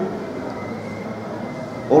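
A pause in a man's speech, filled by steady background noise with no distinct events.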